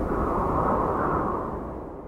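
Cinematic whoosh-and-rumble sound effect for an animated logo intro: a deep rushing noise that holds steady, then fades out near the end.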